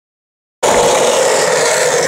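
Skateboard wheels rolling over asphalt: a steady gritty rolling noise that starts suddenly about half a second in.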